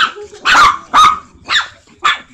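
A chihuahua barking: about four short, sharp barks in two seconds.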